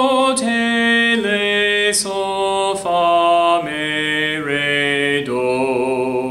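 A man singing the natural minor scale in solfège, unaccompanied. Each note is held a little under a second, and the notes step downward in pitch towards the low tonic.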